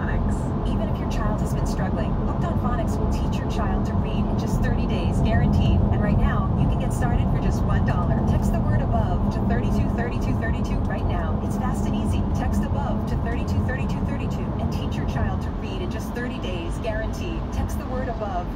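Steady road and engine noise inside a car cruising on a highway, with a car radio's voice playing faintly underneath.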